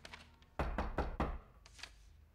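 Knocking on a wooden apartment door: a quick series of about four knocks.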